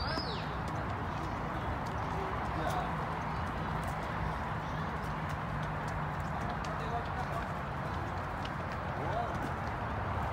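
Steady outdoor background noise with indistinct, distant voices, and no single clear event.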